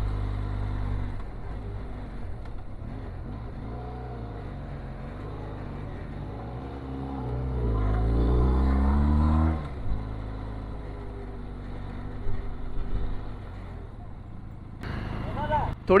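Benelli TRK 502X motorcycle's parallel-twin engine climbing a steep hill road at a steady low drone. About halfway through, the engine note rises in pitch and grows louder for a couple of seconds under throttle, then drops off suddenly as the throttle closes.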